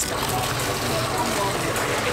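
An excavator's diesel engine idling with a steady low hum, with water running and splashing from the bucket.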